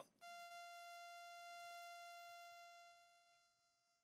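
Synthesised mosquito whine from mosquito.js, a Web Audio oscillator: a faint, high, buzzing tone with many overtones. It starts a moment in and fades away near the three-second mark as its gain drops.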